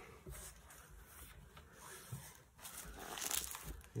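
Thin Bible-paper pages rustling and being turned by hand, a soft rustle about half a second in and a louder run of flipped pages in the last second or so.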